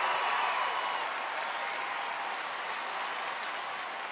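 Large theatre audience applauding, slowly dying down.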